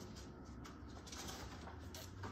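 Quiet room tone with a low hum and faint rustles of a paperback picture book's pages being handled.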